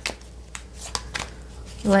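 A deck of tarot cards being shuffled by hand: a string of irregular, quick papery clicks and flicks as the cards riffle against each other.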